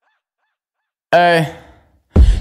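A break in a hip-hop track: about a second of silence, then a single short, loud pitched note, falling slightly in pitch, that fades out before the beat returns.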